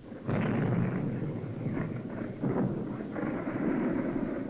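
Artillery shells exploding in a low, continuous rumble. The first blast hits about a quarter second in, and more surges follow around two and a half and three seconds in.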